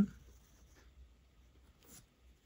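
Faint scratch of a ballpoint pen drawing a line on paper.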